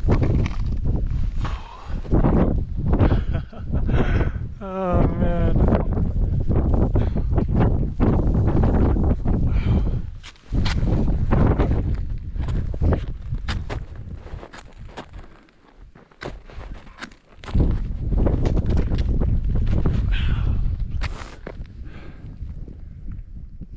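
Climber's boots crunching step by step through snow and over rock, with a low rumble on the microphone, pausing briefly twice in the second half. About five seconds in he gives a short wavering groan.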